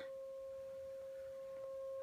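1943 HP 200A vacuum-tube audio oscillator producing a steady sine-wave tone through a small speaker: one pure, unwavering mid-pitched note with a faint overtone an octave above.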